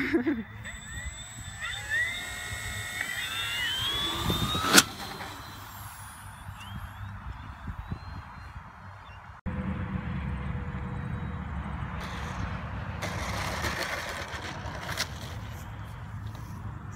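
Electric motor of an RC model warbird whining higher and higher for a couple of seconds, ending in one sharp, loud crack. Then steady wind rumble on the microphone with a faint steady hum.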